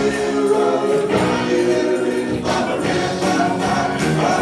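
Live rock band playing: electric guitars, keyboard and drums with sung vocals carrying held notes over a steady beat.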